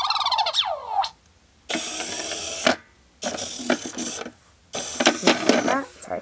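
Code & Go Robot Mouse toy running a programmed sequence: a short sweeping electronic tone at the start, then its small geared motor whirring in three separate runs of about a second each, with short pauses between them as it drives from square to square.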